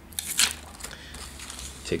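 Thin clear plastic protective film on a new smartphone crinkling and crackling as it is handled and peeled off, with a few sharp crackles in the first half second and softer crinkling after.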